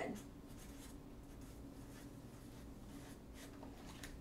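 Felt-tip marker writing on paper: faint, short scratching strokes on and off as a music note and a word are drawn.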